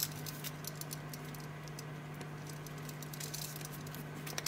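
Small irregular clicks and scratchy rustles of a black leather watch strap and its steel buckle being handled and fastened on a wrist, busiest at the start and sparse in the middle, over a steady low hum.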